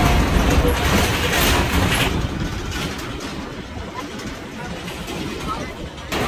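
Tour train running along, a low rumble mixed with wind noise, louder for the first two seconds and then easing.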